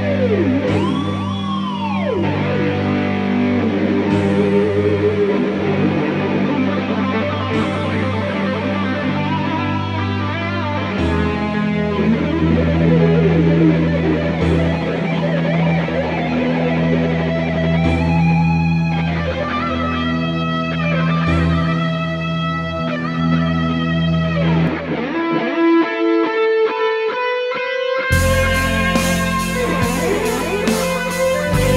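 Instrumental rock/metal track: an electric lead guitar plays a slow solo with wide pitch bends over sustained low backing notes, with a sharp accent about every three and a half seconds. Near the end the low backing drops out for a few seconds, then the full band comes back in heavier.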